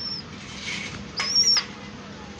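Pigeon squab giving two thin, high-pitched squeaks: a brief one at the start and a louder, longer one about a second and a quarter in.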